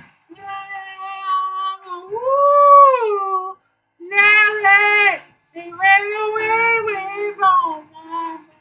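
A man singing unaccompanied in a high voice, with held notes in three phrases split by short pauses. About two seconds in, one long note bends up and back down.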